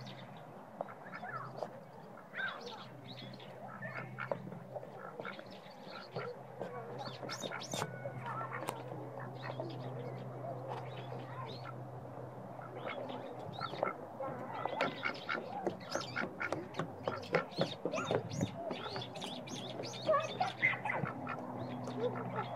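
White domestic ducks quacking in short, repeated calls, sparse at first and coming thicker and louder in the second half, over a low steady hum.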